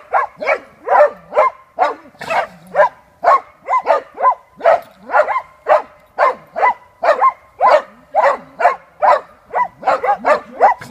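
Dachshunds barking without let-up at a badger they are holding at bay, about two to three sharp barks a second.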